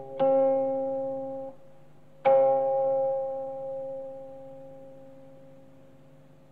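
Slow closing music of plucked string notes: one note about a quarter-second in that is cut short after about a second, and another just over two seconds in that is left ringing and slowly fading away.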